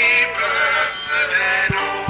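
Live music: a voice singing loudly over strummed and plucked acoustic guitar, the singing fading to plucked notes near the end.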